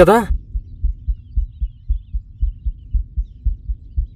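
Low, rapid, heartbeat-like thudding repeating several times a second, a tension pulse laid under the film's dialogue as background score. A word of speech ends it just as it begins.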